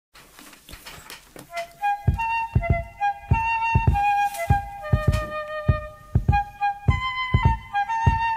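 Background music: after a quiet first two seconds, a melody of held high notes comes in over a steady drum beat.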